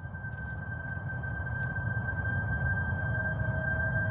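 Trailer sound design: a steady, high, whistle-like tone held over a low rumbling drone, slowly swelling in loudness. A second, lower tone joins about three seconds in.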